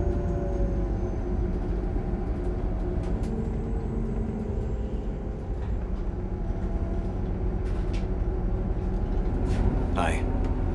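Steady low engine and road rumble heard from inside a moving city bus, with a few faint rattles.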